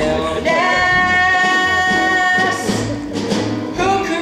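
A boy singing one long held note over a musical accompaniment with a steady bass line, then moving on to shorter sung notes.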